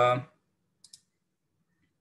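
The tail of a man's word, then a faint double click about a second in: a computer click that advances the presentation slide. Otherwise near silence.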